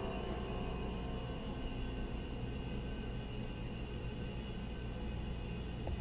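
Steady faint room tone: a low hum with hiss, unchanging throughout.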